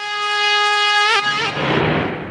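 A wind instrument holding a long, reedy melody note with small pitch turns. About one and a half seconds in, the note breaks off and a short rush of noise takes its place.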